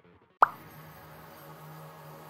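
A single short plop sound effect, its pitch sweeping quickly upward, about half a second in. Soft background music follows.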